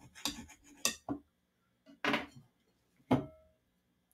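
Table knife clicking and knocking against a ceramic plate as a soft bun is cut through: a handful of short, sharp clicks spread over a few seconds, the last one, about three seconds in, a brief ringing clink.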